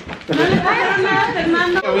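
Several people talking over one another in lively chatter.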